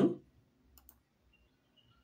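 Computer mouse clicking: two quick clicks just under a second in.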